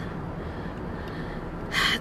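A quick, sharp intake of breath near the end, over the steady low rumble inside a car.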